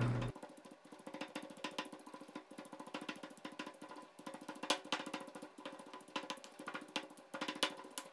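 Stone pestle pounding curry paste in a granite mortar: a run of quick, irregular knocks of stone on stone, dulled by the paste.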